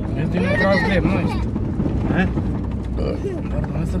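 4x4 off-road vehicle's engine running steadily under way, a low drone heard from inside the cab.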